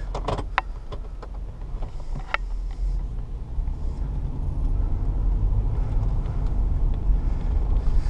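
Low engine and road rumble inside the cabin of a 1999 GMC Suburban with a 5.7-litre 350 V8, driving slowly and growing steadily louder. A few light clicks come in the first couple of seconds.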